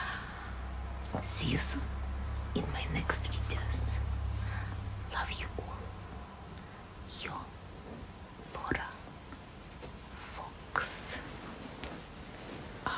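A woman whispering in short breathy bursts with pauses, over a low hum that stops about halfway through.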